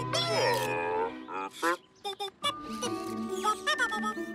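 Cartoon robot voices making sad, meow-like electronic cries: falling, sliding whimpers in the first second, then a few short chirps, over gentle background music.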